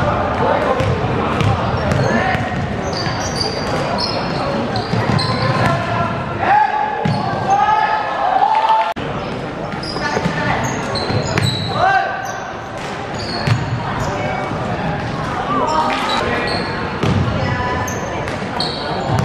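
Shouting voices echoing in a large indoor gym during a basketball game, with a basketball bouncing on the court at intervals.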